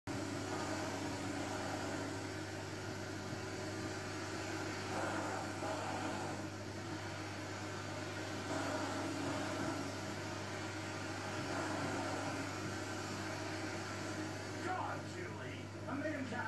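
Faint television dialogue over a steady low electrical hum, with the voices getting clearer near the end.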